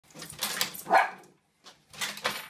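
A small dog barks once, loudly, about a second in, after a few short clicking sounds.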